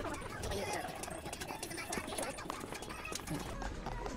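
Indistinct voices over a run of small, sharp clicks and clacks.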